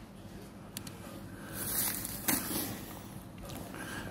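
Quiet handling noise of plastic-wrapped groceries in a wire shopping trolley: a soft rustle swelling up a couple of seconds in and ending in a sharp click, with a smaller click earlier, over steady store background noise.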